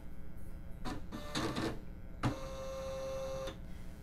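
Husqvarna Viking Designer Jade 35's embroidery unit moving the hoop into position as a design is loaded: short bursts of motor whirring, a knock a little past halfway, then a steady hum for about a second.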